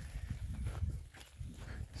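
Footsteps through grass and handling of a hand-held phone, heard as an uneven low rumble with a few soft knocks.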